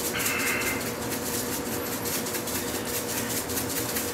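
Pot of soup simmering on a stove: a steady bubbling crackle with a faint steady hum underneath. A brief high squeak sounds right at the start.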